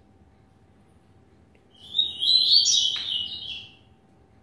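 A caged male double-collared seedeater (coleiro) sings one loud, fast, high-pitched song phrase lasting about a second and a half, starting about two seconds in.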